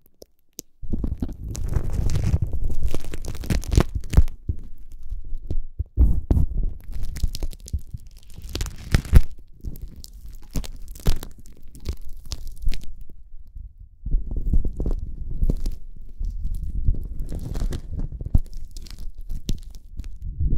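Clear plastic cling wrap being crumpled and squeezed by hand right up against the microphones. It makes an irregular stream of crinkly crackles over a deep, muffled rumble, starting after a brief pause.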